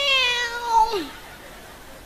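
A man's voice imitating a cat's meow: one long, drawn-out call that slides slowly down in pitch and ends with a quick drop about a second in, heard through a microphone.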